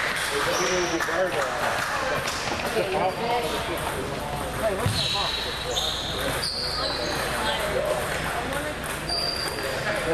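Chatter of many voices in a table tennis hall, with ping-pong balls clicking off paddles and tables at the neighbouring tables and a few brief high squeaks, typical of shoes on the gym floor.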